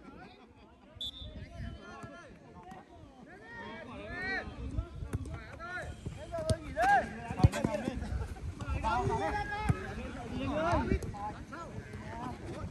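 Players shouting and calling to each other across an outdoor football pitch, starting a few seconds in, with a laugh near the end. There are a couple of sharp knocks around the middle, from the ball being kicked.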